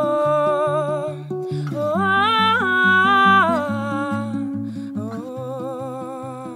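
A woman singing a wordless melody in long held notes with vibrato, over fingerpicked acoustic guitar. The voice steps up to a higher note about two seconds in, comes back down, and grows quieter toward the end.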